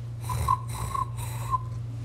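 A man breathing noisily through his nose close to the microphone, three short breaths with a faint whistle, over a steady low electrical hum.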